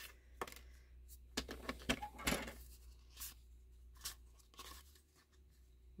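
Sheets of patterned paper and cardstock being handled and shuffled over a paper trimmer: a string of short paper rustles and light taps.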